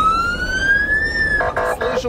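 Russian police car siren: a single wail that climbs slowly in pitch and cuts off about a second and a half in, followed by a short buzzy blast of the police 'quack' horn (крякалка).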